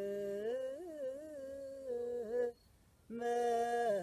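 A man chanting Ethiopian Orthodox liturgical chant in Ge'ez, solo and unaccompanied, in long melismatic notes that waver in pitch. He breaks off for a breath about two and a half seconds in, then comes back in on a louder held note.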